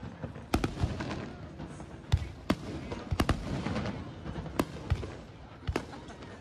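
Aerial fireworks bursting: a run of sharp bangs at irregular intervals, about eight in six seconds, two of them in quick succession near the middle.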